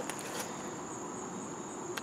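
Faint outdoor background with a steady, high-pitched insect trill, typical of crickets, over a low hiss.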